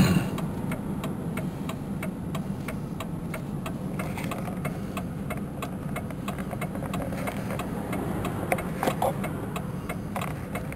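Steady drone of a car's engine and tyres heard from inside the cabin, with an even, rapid ticking running through it. A sharp knock comes right at the start, and a couple of softer bumps come near the end.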